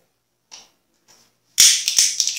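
A sharp click followed by about a second of rustling and small clicks, as of objects being handled.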